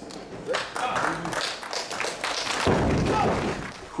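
A loaded barbell with bumper plates dropped from overhead onto a lifting platform: one heavy thud about three-quarters of the way through, with voices in the background before it.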